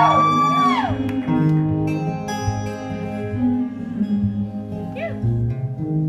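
Live acoustic band ending a song. A sung note trails off about a second in, then acoustic guitar and keyboard hold the closing chords. A brief whoop comes about five seconds in.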